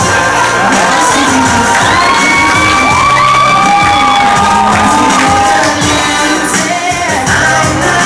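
Loud pop song with singing, and an audience cheering and whooping over it, the whoops strongest from about two to five seconds in.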